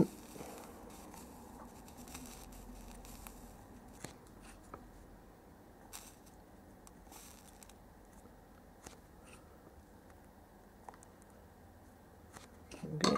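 Drag soldering with a soldering iron along a QFN chip's pins in liquid rosin flux: mostly quiet, with a few faint scattered ticks.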